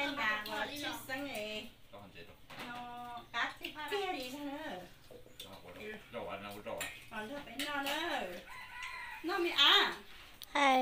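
People talking over a meal, with a rooster crowing among the voices.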